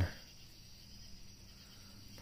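Quiet pause with a faint steady high-pitched hiss and no distinct events; the end of a spoken word fades out right at the start.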